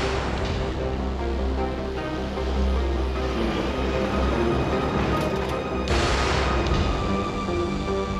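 Tense, ominous film-score music: held synthesizer tones over a steady low bass, with a short rushing swell about six seconds in.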